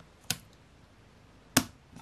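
Clear plastic alignment frame snapping onto the phone's edges: two sharp plastic clicks, a lighter one first and a louder one about a second and a half in.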